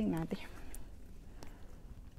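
A woman's voice finishing a word, then quiet room noise with a few faint clicks.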